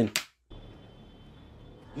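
A single click, then a faint steady background with a thin high tone as a TV drama's soundtrack starts playing through the computer.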